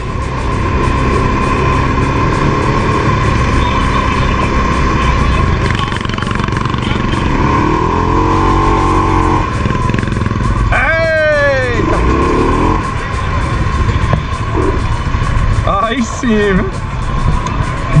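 Segway quad bike's engine running steadily as it rolls at low speed over paving, with a steady whine over the engine rumble. A voice calls out briefly about eleven seconds in.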